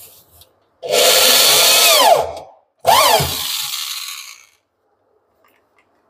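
Cordless drill driving screws into a plywood cabinet side: the motor runs twice, each time for about one and a half to two seconds, its pitch falling away as it slows at the end of each run.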